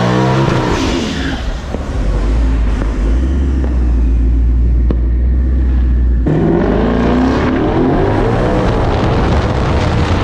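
A Ford Mustang GT's V8 revving hard and running under heavy load, with a deep steady rumble. About six seconds in the sound drops off suddenly, then the engine revs up again.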